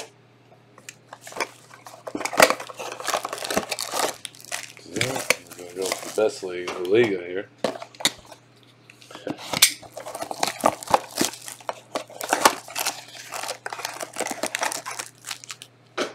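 Plastic shrink wrap on a trading-card box crinkling and tearing as it is slit with a box cutter and pulled off, a run of sharp rustles and crackles.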